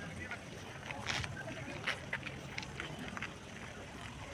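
Indistinct voices of people talking, over a low steady hum.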